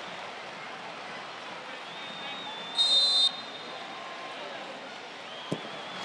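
A referee's whistle blown once, short and shrill, a little before halfway through, signalling the free kick to be taken; about two seconds later a single sharp thud as the ball is kicked. Underneath, a steady hiss of stadium ambience.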